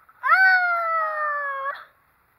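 One long, high-pitched squeal from a person overcome with laughter. It jumps up sharply, then slides slowly down in pitch for about a second and a half.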